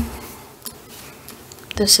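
A short pause in speech in a meeting room: a soft low thump at the start, then quiet room tone with a few faint clicks, and a woman's voice starting again near the end.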